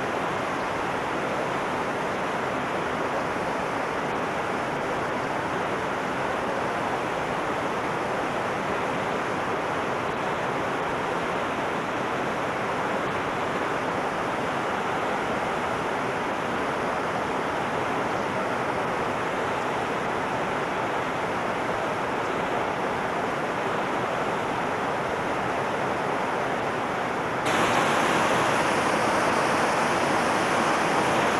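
Steady rush of a small waterfall pouring over rock into a pool. The rush jumps louder and brighter about 27 seconds in.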